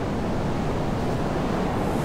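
Shallow surf washing in at the water's edge: a steady rush of foaming seawater.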